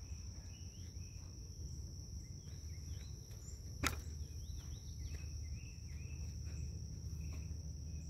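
Outdoor woodland ambience: a steady high-pitched insect drone with scattered short chirping calls over a low rumble, and a single sharp click a little before halfway.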